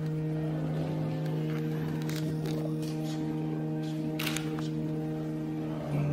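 Church organ holding long, sustained chords, changing to a new chord at the end.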